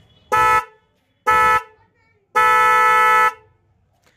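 Aftermarket Creta-type car horns, a disc horn and a snail horn wired together, sounded in two short blasts and then one long blast of about a second.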